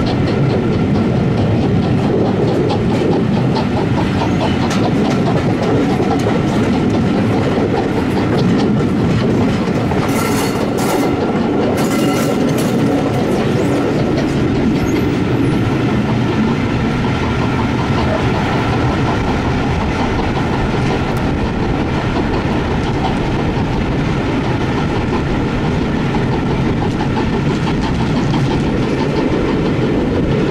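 Railway carriages running at speed, heard from on board: a steady rumble with the wheels clattering rapidly over the rail joints. Two brief sharper bursts of noise come about ten and twelve seconds in.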